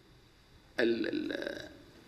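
A man's voice: a brief pause, then one short voiced utterance lasting under a second, fading out.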